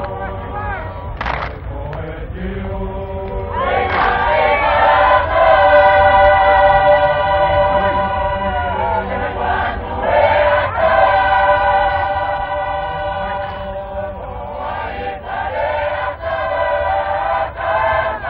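Tongan lakalaka sung by a large group choir in parts. The singing is lighter at first, then swells into long held chords about four seconds in. It eases for a moment near nine seconds and again near fourteen.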